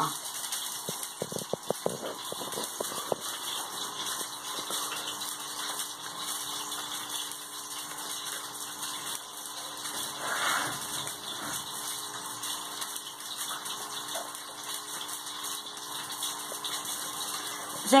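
Paper crinkling and creasing as scrapbook paper is folded and pressed onto a cardboard box, with a few sharp crackles in the first few seconds, over a steady hiss and low hum.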